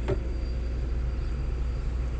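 Komatsu PC200 excavator's diesel engine idling steadily, heard from inside the cab as a low, even rumble while the engine is still warming up.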